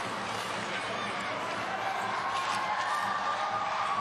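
Steady crowd noise of spectators in an ice arena: an even murmur of many voices with no single sound standing out.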